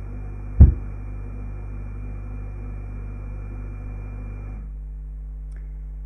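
Steady low electrical hum with a single sharp, loud thump just over half a second in. A faint hiss over the hum stops suddenly about three quarters of the way through.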